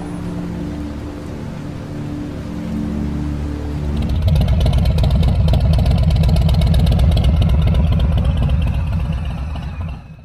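Motorcycle engine running through twin chrome exhaust pipes, heard close to the pipes as a loud low rumble with rapid even pulsing. It starts about four seconds in and fades at the very end. Before it, steady tones that change in steps, like background music.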